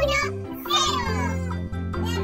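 Background music with a steady bass line, and two high gliding, voice-like calls over it: one at the start and a longer one just under a second in.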